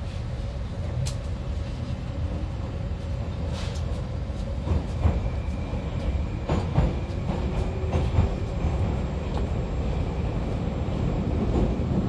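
Interior sound of a Moscow Metro 81-775/776/777 train pulling out of the station and gathering speed into the tunnel. A steady low running rumble carries through. About halfway in, a faint whine from the traction drive comes in and rises in pitch, and a few sharp clacks of the wheels over rail joints follow.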